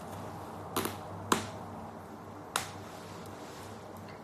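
Three short, sharp clicks, a second or so apart, over a low steady room hum.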